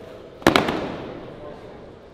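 A loud, sharp bang about half a second in, with a few quick follow-up cracks, trailing off over about a second.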